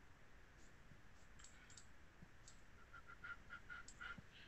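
Near silence with faint, scattered clicks from a computer keyboard and mouse during a log-in, then a short run of about five faint high pips in the last second.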